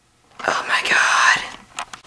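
A boy whispering: one breathy, unvoiced utterance starting about half a second in and lasting about a second, followed by a couple of faint clicks near the end.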